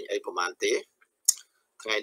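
Speech: a man talking in Khmer, breaking off briefly with a short sharp click during the pause about a second in, then talking again.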